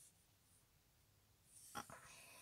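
Near silence: room tone, with a few faint short rustles or breath sounds near the end.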